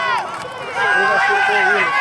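Several spectators' voices shouting over one another during a football play, growing louder a little under a second in.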